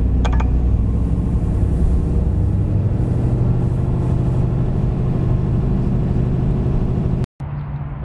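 Steady low drone of a Dodge Ram 3500's Cummins turbodiesel inline-six, heard from inside the cab as the truck drives slowly. The sound cuts off abruptly near the end.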